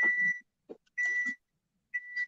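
Electronic beeper sounding a short high beep about once a second, three times.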